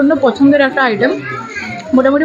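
Speech: a woman talking close to the microphone, with children's voices in the room behind.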